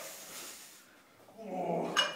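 A person's breathy exhale, then a voiced shout building in the last half second, from a weightlifter straining under a barbell held overhead.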